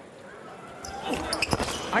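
A hushed basketball arena during a free throw, then from about a second in a few sharp knocks of the basketball as crowd noise rises: the free throw going in.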